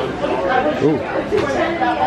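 Chatter of shoppers' voices in a crowded store, several people talking over one another, one voice fairly close.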